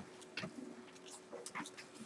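Faint taps and short scratches of a marker writing numbers on a whiteboard, over a low steady hum.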